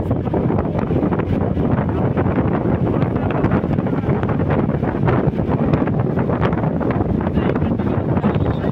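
Wind buffeting the microphone from the side window of a moving vehicle, a loud, steady rush with the vehicle's road and engine noise beneath it.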